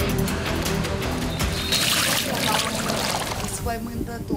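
Background music over the splashing and swishing of floodwater being swept along a wet floor, loudest about two seconds in.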